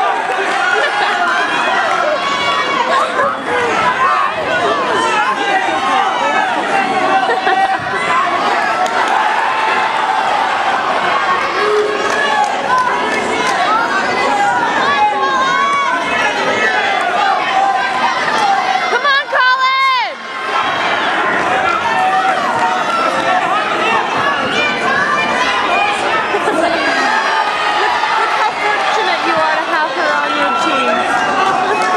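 Spectators in a gym shouting, yelling encouragement and talking over one another during a wrestling bout. About twenty seconds in, a louder, high, wavering sound rises above the crowd.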